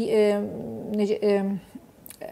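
A woman's voice holding a long, level hesitation sound ('eee') mid-sentence, followed by a few short, broken syllables and a brief pause near the end.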